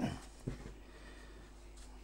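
Faint, soft sounds of hands squeezing and kneading spelt wholemeal dough with butter pieces on a wooden board, over a low steady hum.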